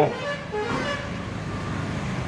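Road traffic noise with a faint vehicle horn tooting, steady and well below the level of the speech.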